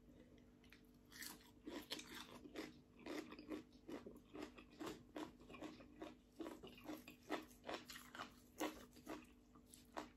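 Faint close-up chewing of crunchy raw vegetables and green papaya salad: irregular soft crunches, a few a second.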